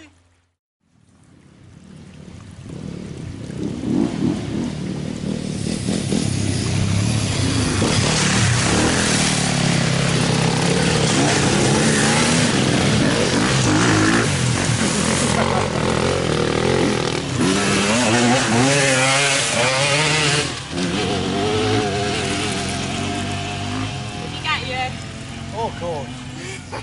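Enduro motorcycle engines revving and rising and falling in pitch as riders come down the hill and through a muddy water splash, with water spraying. The sound builds over the first few seconds and stays loud until a drop about twenty seconds in.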